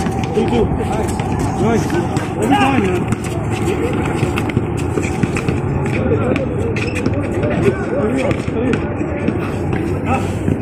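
Players and onlookers calling out and shouting on an outdoor basketball court, over a steady low hum, with scattered sharp knocks through the game noise.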